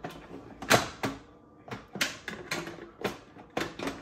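The lid of a Gourmia electric pressure cooker being twisted and pushed onto its base, giving a string of plastic-and-metal clacks, knocks and creaks, the loudest about a second in and another about two seconds in. The lid is hard to seat and does not lock on easily.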